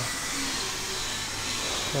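A steady hiss of background noise with a faint high whine running through it, and a low voice murmuring faintly once or twice.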